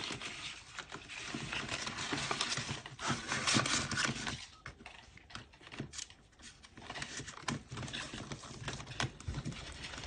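Paper banknotes and a plastic cash-binder pocket being handled close up: irregular rustling and crinkling with light clicks and taps, quieter for a few seconds in the middle.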